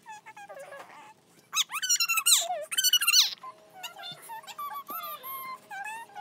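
High-pitched squealing cries, loudest in a run of several from about a second and a half in, then softer whining cries over a faint steady hum.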